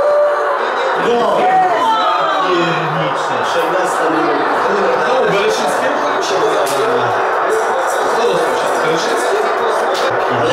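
Football match broadcast on a television: steady stadium crowd noise with many overlapping, indistinct voices.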